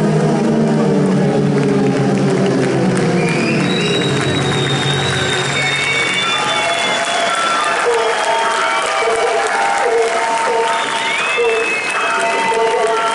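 A rock band's final chord rings out and fades over the first few seconds while a concert audience applauds, cheers and whistles.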